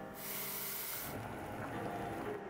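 Water boiling in a small steel saucepan with eggs in it: a steady hiss and bubbling, brighter for about the first second and then softer.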